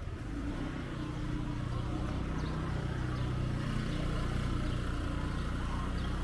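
Street traffic: a vehicle engine running with a steady low hum over general street noise, slowly getting louder.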